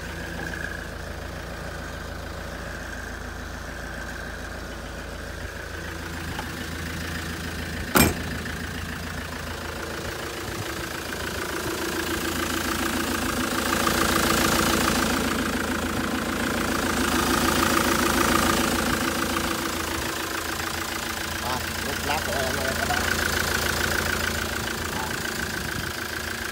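The diesel engine of a 2005 Ford Transit van idling steadily. It grows louder for several seconds in the middle, when the front grille is close. A single sharp knock comes about eight seconds in.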